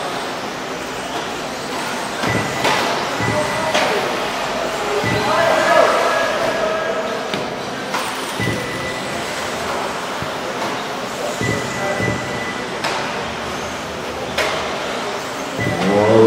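Radio-controlled 4WD off-road buggies racing on a dirt track: short high motor whines, tyre noise and scattered sharp knocks as the cars land jumps and hit the track borders, over a hall's background of voices and music.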